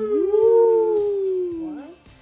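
Dog howling: one long howl that rises at the start, then slowly falls in pitch and fades out after nearly two seconds.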